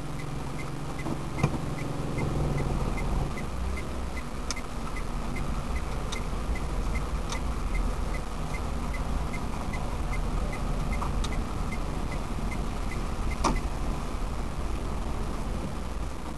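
A car's turn-signal indicator ticking steadily, about two to three clicks a second, over the engine and road noise inside the cabin, with a few sharper clicks, the loudest about a second and a half in.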